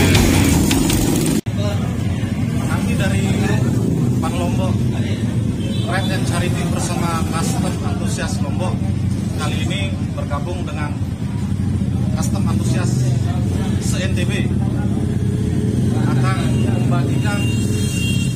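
Music for the first second and a half, cut off abruptly, then an engine running steadily at a low hum under people's voices.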